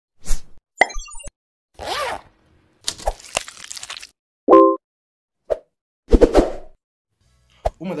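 Sound effects for an animated logo intro: a string of short pops, clicks and whooshes with silent gaps between them, and a brief pitched note about halfway through.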